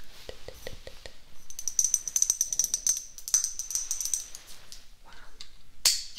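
A small handheld object rattling and jingling rapidly for about three seconds over a steady high ringing, with a single sharp click near the end.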